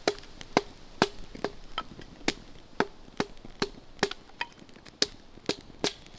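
Dry grass tinder fire crackling, with sharp snaps coming about twice a second.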